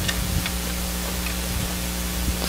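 Room tone: a steady low electrical hum under hiss, with a couple of faint clicks in the first half second.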